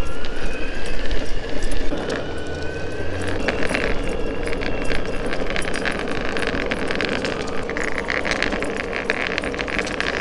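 Boosted Board electric skateboard running at top speed: the motors whine, rising in pitch over the first few seconds as the board speeds up, over the steady rumble of the wheels on pavement. From about a third of the way in, a fast rattle of small clicks runs on top.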